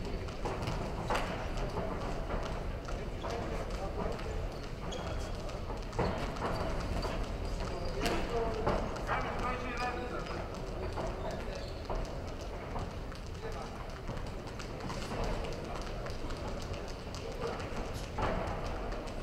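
Boxing bout in an arena: boxers' footwork on the ring canvas and gloves landing, heard as scattered sharp knocks, over shouting voices from around the ring.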